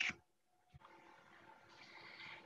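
Near silence: faint room tone with a faint steady hum, after a brief clipped sound at the very start.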